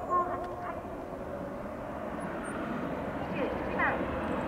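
A sports car's engine running at speed as the car comes down the circuit straight, growing steadily louder as it approaches. Voices are heard near the start and again near the end.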